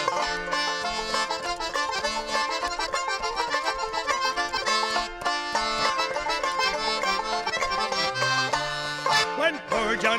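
Instrumental break of a traditional folk song: banjo picking and button accordion playing the tune together at a lively pace. A singing voice comes back in near the end.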